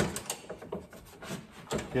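Bamboo cutting board sliding into the slot of a steel fold-down tailgate table. A sharp knock at the start, then scraping and light knocks as it is pushed in and centered.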